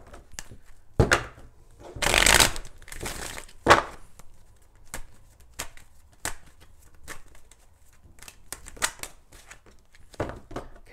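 A deck of oracle cards being shuffled and handled: a run of soft card taps and slides, a longer, louder riffling rush about two seconds in and a sharp snap just before four seconds, then lighter taps as a card is pulled from the deck.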